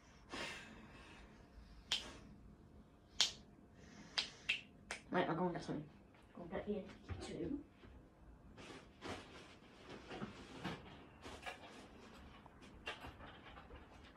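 Scattered sharp clicks and light knocks of small objects being handled, strongest in the first few seconds and lighter and more frequent in the second half, with a couple of short murmured vocal sounds about five to seven seconds in.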